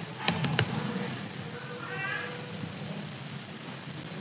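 A few quick keyboard clicks near the start as a search term is typed, over a steady background hiss. Around the middle comes a faint, brief high-pitched call that bends in pitch.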